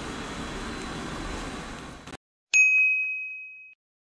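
Steady background noise cuts off about two seconds in. After a brief silence comes a single bright, bell-like ding that rings on and fades away over about a second.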